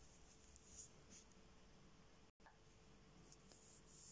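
Near silence, with a few faint, light clicks and rubs from knitting needles working a purl row in fine yarn.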